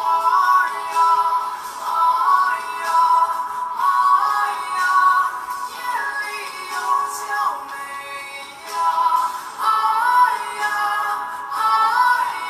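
Male pop singer singing a high melodic line in Mandarin over backing music, from a live concert recording played back.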